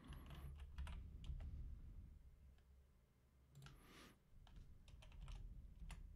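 Faint computer keyboard typing: scattered light key clicks, mostly in the first two seconds and again a little past the middle.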